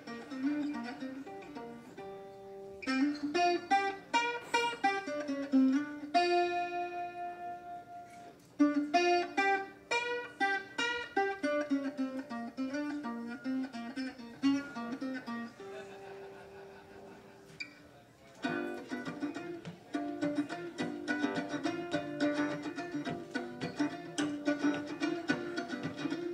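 Blues instrumental on mandolin and harmonica: picked mandolin phrases and long held harmonica notes, moving into a steady strummed mandolin rhythm about two-thirds of the way through.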